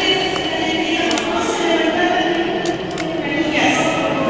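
Indistinct voices of a large seated crowd, with speech carrying through a big, echoing hall.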